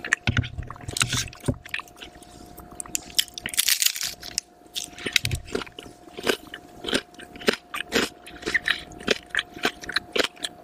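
Close-miked crunchy chewing of a roasted turkey sandwich layered with potato chips: a dense run of sharp crackles and crunches, with a brief hiss-like rustle about three and a half seconds in. A faint steady hum lies underneath.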